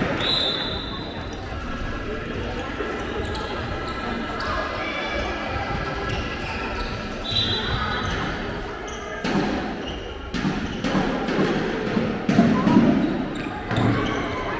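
A handball bouncing on the wooden floor of a sports hall, with the sharpest bounces in the second half, under a mix of players' and spectators' voices calling out in the reverberant hall.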